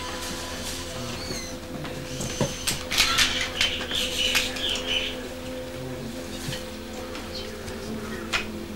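Short chirps and calls of small birds, bunched between about three and five seconds in, over a steady low hum.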